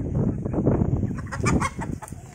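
Chickens clucking and squawking as they scatter from someone chasing them, with short sharp calls in the middle and near the end. Underneath is a dense low rumbling noise.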